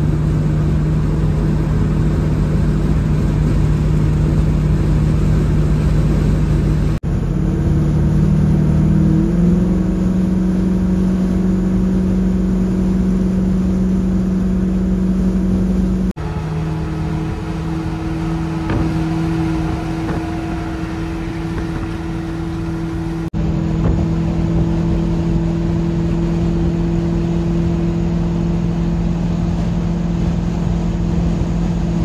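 Chevy C10 pickup's engine and road noise at highway cruising speed, heard from inside the cab as a steady drone. About nine seconds in, the engine note climbs a little and holds higher. The sound breaks off abruptly three times where separate clips are joined.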